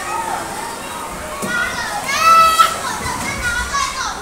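Children playing and calling out, with one child's loud, high-pitched squeal lasting under a second about two seconds in.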